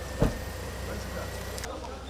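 A single heavy thump about a quarter of a second in, over a steady low outdoor hum and faint voices. The background hiss drops suddenly near the end.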